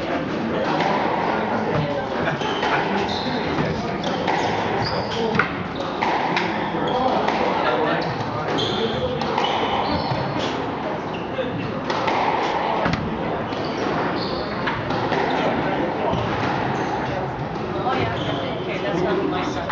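A squash rally: the ball cracks off the rackets and slaps against the court walls many times, with short high squeaks from the players' shoes on the wooden floor, all echoing in the court.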